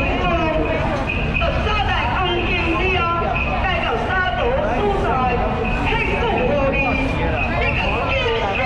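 Crowd chatter: many voices talking at once with no single speaker standing out, over a steady low rumble.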